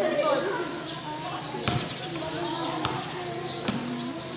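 Basketball bouncing on an outdoor concrete court, a few sharp bounces among people's voices.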